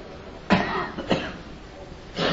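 A cough, sudden and loud, about half a second in, followed by a second shorter burst a moment later.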